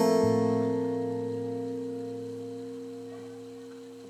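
Acoustic guitars let one chord ring out and slowly fade away, with no new strums.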